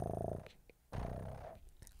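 Domestic cat purring, in two drawn-out breaths: one in the first half second and another from about a second in.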